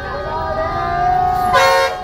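A vehicle horn sounds one short, loud honk about one and a half seconds in, over the voices of a crowd.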